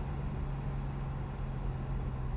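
Turbocharged BMW M50 straight-six engine heard from inside an E30's cabin while driving, a steady drone whose pitch holds nearly level.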